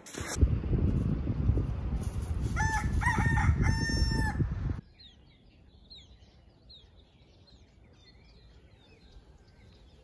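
A rooster crowing: a few short notes, then one long held note, over rumbling handling noise from a phone being moved about. It cuts off suddenly, leaving only faint chirping of small birds.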